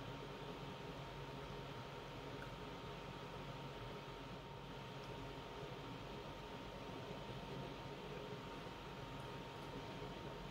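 Faint, steady background hiss of room tone with a thin, steady high hum running through it; no distinct sounds stand out.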